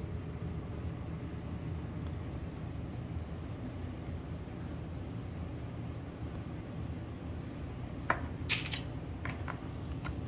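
Steady low hum of a fan or kitchen appliance while raw ground-beef meatballs are rolled by hand. A few sharp handling clicks and a brief crinkle come about eight to nine and a half seconds in.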